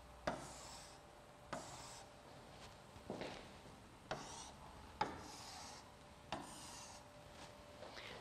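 A stylus pen tapping and scraping across an interactive whiteboard screen as words are underlined. There are about six short, faint strokes, each a sharp tap followed by a brief scratchy rub.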